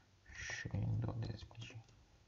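A voice speaking softly and half-whispered, under the breath: a short hiss about half a second in, then low mumbling.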